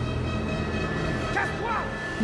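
Film trailer soundtrack: a low sustained music drone, with a few brief high cries over it about halfway through.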